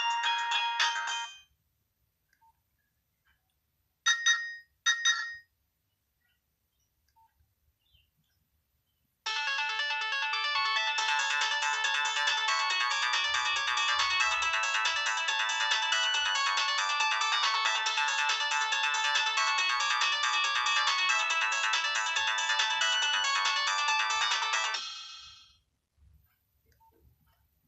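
Nokia 6030 mobile phone playing polyphonic MIDI ringtone previews. One tune stops about a second in, and two brief snatches of a tone follow around four and five seconds. Then a fuller ringtone melody plays for about fifteen seconds and dies away near the end.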